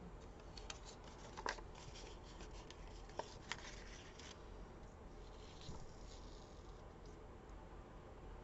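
Faint rustling and crackling of a paper sticker being handled and pressed onto a planner page, with a few sharper paper crinkles in the first half.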